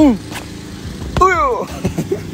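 Two short shouted calls in a person's voice, each falling in pitch: one right at the start and a longer, higher one just past a second in, each opening with a sharp knock. A steady low hum runs underneath.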